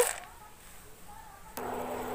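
Quiet room tone, then a steady low hum that starts abruptly about a second and a half in.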